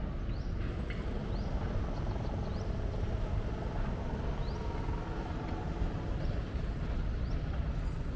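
Outdoor rooftop ambience: a steady low rumble with short, high, rising chirps repeating every second or so.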